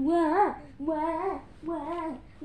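A high, child-like voice singing a wordless tune in three drawn-out phrases, each rising and then dropping away at its end.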